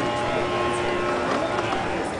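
Indistinct voices of several people talking at once, with no words standing out, over a steady background that holds a few held tones.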